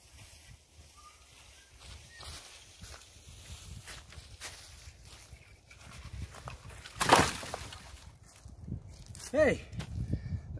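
Footsteps crunching on dry leaf and pine-needle litter as an armload of dead, rotten branches is carried in, then a loud clatter about seven seconds in as the wood is dropped onto the pile.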